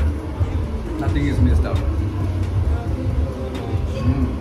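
Indistinct speech over a steady low rumble.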